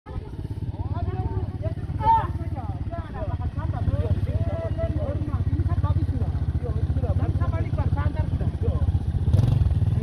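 Small motorcycle engine idling steadily, a low, even running note.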